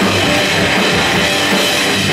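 A live rock trio playing an instrumental passage: distorted electric guitar, bass guitar and a full drum kit, loud and dense, with no vocals.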